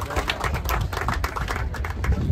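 A crowd applauding, with dense hand claps that begin to thin out near the end.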